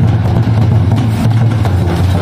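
Folk drumming from several drums, barrel drums and a large bowl-shaped kettle drum, struck in a quick continuous beat over a steady low hum.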